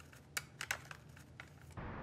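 Several light, irregular clicks as a mobile phone is tapped to dial a call. Music starts near the end.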